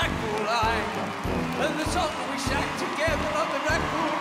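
Upbeat electronic keyboard music with a steady beat, about five beats every three seconds, under a wavering melody line, with an audience clapping along.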